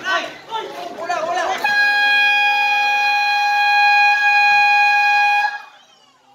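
Basketball game horn sounding one steady, loud tone for about four seconds, starting about a second and a half in and then cutting off: the buzzer marking the end of the quarter.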